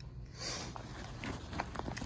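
Faint rustling and handling of a leather handbag as a hand reaches into it, with a few light clicks of its metal hardware or contents.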